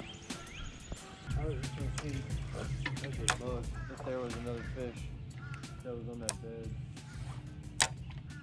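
Faint speech over background music with a steady low note, with scattered light clicks.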